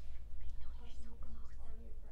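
A woman's voice speaking softly, close to a whisper, in short phrases over a steady low room rumble.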